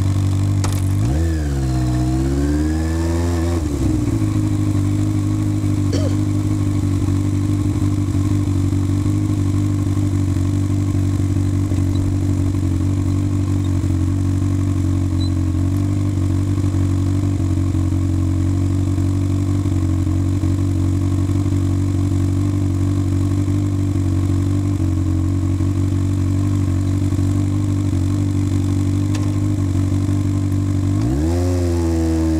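Sport motorcycle's engine, heard from the rider's seat, dipping and then briefly rising in revs in the first few seconds, then idling steadily.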